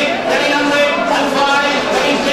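Livestock auctioneer's rapid, unbroken sing-song chant taking bids on cattle in the sale ring, with cattle mooing.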